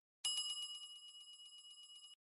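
A bell-like ringing sound effect, in the manner of a bicycle bell, starting about a quarter second in. It rings with a rapid flutter, loudest at first and slowly dying away.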